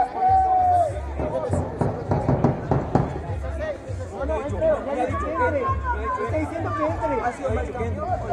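Several people talking indistinctly at once, over background music with a regular pulsing bass.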